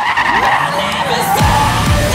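A police cruiser's rear tyres squealing as it spins them in a burnout, a shrill screech that gives way about one and a half seconds in to trailer music with deep falling bass drops.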